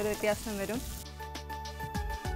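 Food sizzling in a frying pan under a woman's voice; about a second in the sizzle drops away abruptly and background music takes over.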